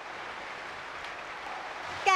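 A large audience applauding steadily, heard as an even wash of clapping.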